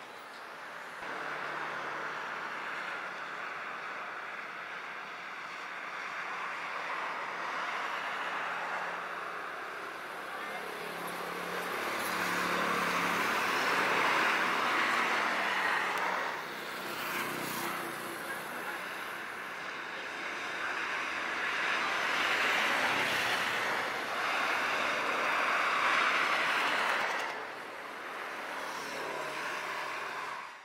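Highway traffic: cars passing one after another, tyre and engine noise swelling and fading as each goes by, loudest about halfway through and again near the end.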